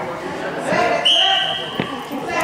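Referee's whistle blown once about a second in, a steady high blast lasting under a second that starts the wrestling from the referee's position, with a short knock near its end. Voices in the gym are heard before it.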